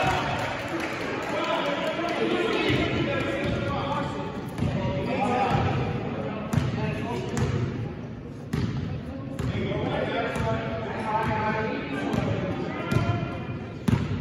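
A basketball bouncing on a gym floor as it is dribbled, a handful of sharp irregular thuds, under indistinct voices of spectators and players talking and calling out.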